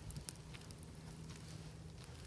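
Faint, soft sounds of a knife cutting a muskrat's skin and flesh during skinning, a few scattered small ticks, over a low steady hum.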